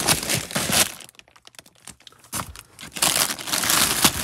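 Plastic bags and packaging crinkling and rustling as goods are rummaged through by hand, with a quieter stretch of small clicks and knocks in the middle before loud rustling again near the end.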